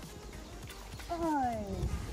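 A woman's voice: one drawn-out wordless exclamation starting about a second in, sliding down in pitch for nearly a second.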